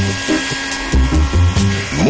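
Handheld electric hairdryer running with a steady high whine, over background music with a regular low beat.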